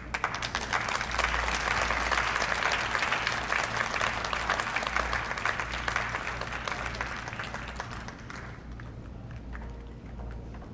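Applause: many hands clapping together, starting sharply and tailing off about eight seconds in.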